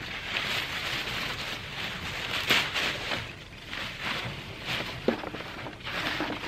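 Rustling of bean vines and leaves being handled and pulled apart as pods are picked, with several louder brushes over a steady hiss.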